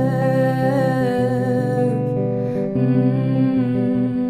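A woman singing a long, wordless, wavering vocal line over guitar chords, in a solo song performance.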